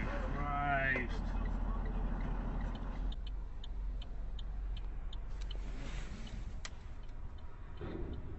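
Low steady engine rumble of a truck, with a voice crying out in a rising, wavering pitch in the first second. About three seconds in, the sound changes to quieter road noise with light regular ticks at about three a second.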